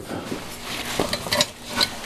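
Steady room hiss with a few light, sharp clicks and clinks in the second half, like small hard objects being handled.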